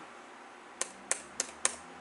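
Four short, sharp clicks about a third of a second apart, from computer keys being pressed.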